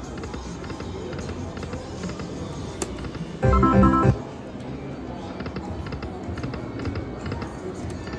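Video slot machine game sounds over a steady casino murmur, with one short, loud jingle of stacked tones about three and a half seconds in, lasting under a second.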